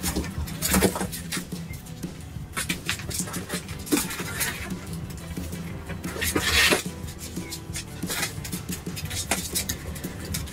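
Irregular knocks, clicks and rustling as corgi puppies are handled and lifted out of a plastic playpen into a cardboard box, with a louder rustle about six and a half seconds in.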